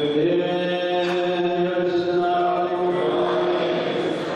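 Men's voices chanting a liturgical prayer over microphones and a loudspeaker, in long held notes that shift pitch only a few times.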